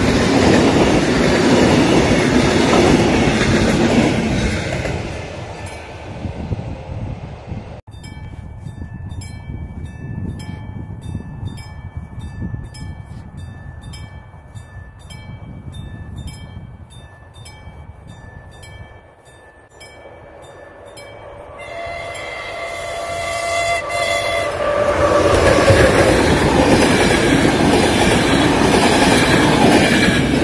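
Passenger train carriages rumbling past with wheel clatter, fading away over the first few seconds. After a cut comes a quieter stretch with a regular electronic ticking signal, about two a second. Then a train horn sounds, and a passenger train hauled by a ZSSK class 163 electric locomotive approaches and runs past loudly.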